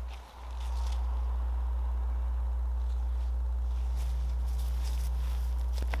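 Steady low rumble of wind on the microphone, with a few faint footsteps on grass near the end as a disc golfer takes his run-up to throw.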